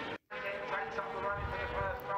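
600cc racing motorcycles running at high revs on track, a steady set of engine tones, cut off by a brief dropout about a quarter second in, then a new stretch of wavering engine tones.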